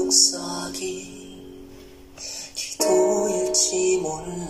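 Male vocal quartet singing a slow ballad in harmony over piano, softer in the middle and swelling again near the end.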